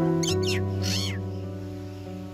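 A Bali myna giving two short calls about half a second apart, over background piano music with held notes.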